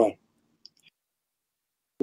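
A pause in a man's speech: the end of a word, then silence broken by one faint, short click about two-thirds of a second in.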